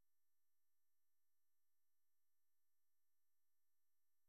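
Near silence: a digitally quiet pause with only a very faint steady hum.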